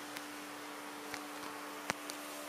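Quiet room tone with a steady low hum, and a few small clicks from a handheld camera being swung around; the sharpest click comes near the end.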